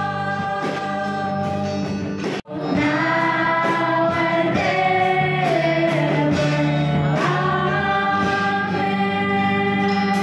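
Voices singing a gospel hymn, with a dog howling along to the singing. The sound cuts out for an instant about two and a half seconds in, then the singing resumes a little louder.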